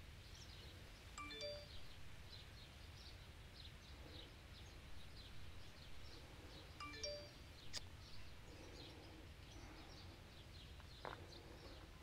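Quiet rural outdoor ambience with faint, scattered bird chirps. Twice, about six seconds apart, a short chime of a few clear tones sounds, and a single sharp click comes near the middle.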